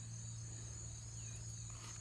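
Faint, steady, high-pitched insect trilling, with a low steady hum beneath it.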